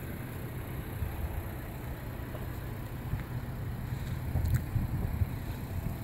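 Low, steady outdoor background rumble with a few faint ticks about four and a half seconds in.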